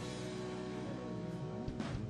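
An acid jazz band playing an instrumental passage of sustained chords, with a sharp accent hit at the start and another near the end.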